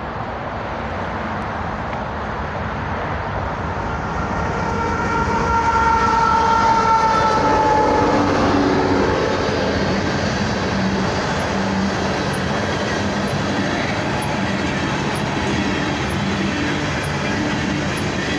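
Loaded coal train passing behind diesel-electric locomotives. The horn sounds one held chord for about four seconds and drops in pitch as the lead unit goes by, then the locomotive engines give way to the steady rolling and clatter of loaded coal cars on the rails.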